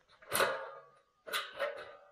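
Steel C-purlin clanking twice as it is lifted and handled, about a second apart, the second clank leaving a short metallic ring.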